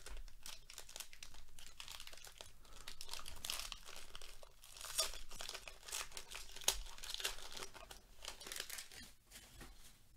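Foil wrapper of a 40-card Panini Score football fat pack being torn open and crinkled by hand: a run of crackling rips and rustles that thins out near the end as the cards come free.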